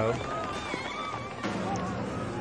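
Speech from the Japanese TV episode's soundtrack, playing at moderate level.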